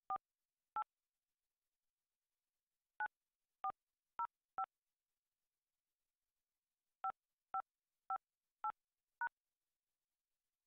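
Telephone keypad touch-tones (DTMF): eleven short two-tone beeps in three groups of two, four and five, with pauses between. They are a meeting ID being keyed into a Zoom phone dial-in line.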